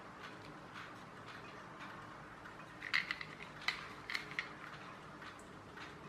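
Hard plastic toy robot and controller being handled in the hands, with a quick run of light plastic clicks and taps about halfway through.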